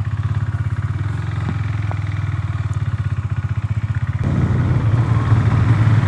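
KTM Duke 390's single-cylinder engine idling with an even, pulsing beat; about four seconds in the sound turns louder and rougher as the bike gets under way.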